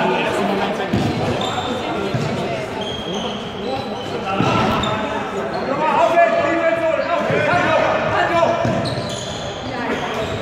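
Indoor ultimate frisbee players' shoes squeaking and feet running on a sports hall floor, many short high squeaks, with players' calls echoing in the large hall.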